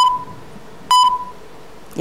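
Debate countdown timer beeping, one short high beep each second, two in these two seconds, as the speaking time runs down to zero.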